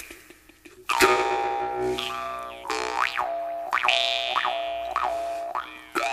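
Jaw harp coming in about a second in: a steady twanging drone whose overtones swoop up and down in repeated wah-like glides.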